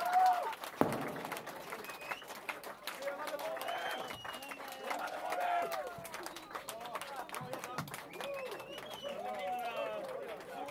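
Club crowd chattering, with scattered hand clapping and a single sharp knock about a second in; the music has stopped.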